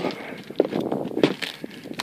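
Footsteps on dry dirt ground: a few irregular steps.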